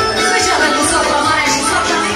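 Live wedding-band music for dancing, loud and continuous.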